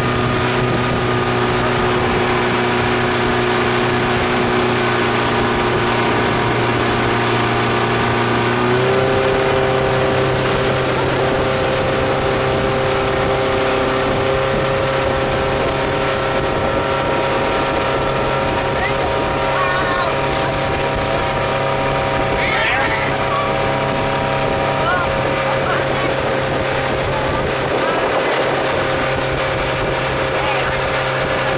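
Motorboat engine running steadily at speed while towing a tube, with water rushing in its wake. About nine seconds in, the engine note steps up slightly and then holds.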